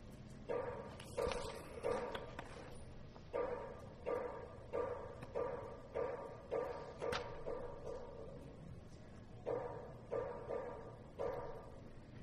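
Wooden block struck in a steady rhythm, about one and a half knocks a second. Each knock has the same hollow ringing pitch and dies away quickly. A run of about ten knocks is followed by a pause of about two seconds, then four more.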